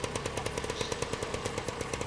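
A small engine running, with a fast, even rattle over a steady hum.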